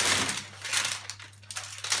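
Plastic snack packages crinkling and rustling as they are handled and dropped onto a pile, in three short bursts.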